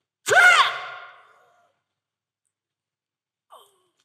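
A man's single loud shout about a quarter second in, rising then falling in pitch, its echo trailing off over about a second in a large hall.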